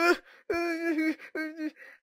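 A voice actor wailing and sobbing in pain as a crying cartoon dog: three drawn-out cries.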